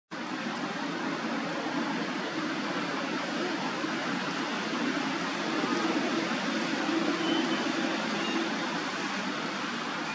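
Steady outdoor background noise, an even hiss with no distinct animal calls.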